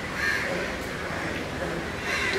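A crow cawing: one harsh call just after the start, over low background voices.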